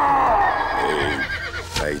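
A horse whinnying: one long call that falls in pitch and ends in a wavering tail about a second and a half in.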